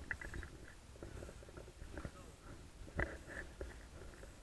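Quiet outdoor ambience: a low rumble of wind on the microphone, with faint distant voices near the start and again about three seconds in, and a single click about three seconds in.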